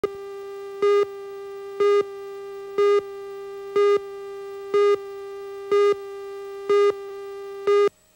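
Videotape countdown leader: a steady line-up tone with a louder, buzzier beep at the same pitch once every second as the slate counts down. Eight beeps, then the tone cuts off suddenly just before the end.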